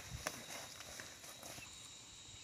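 Faint footsteps of several people walking on a dirt path covered in pine needles: a few light scuffs and crunches, mostly in the first second.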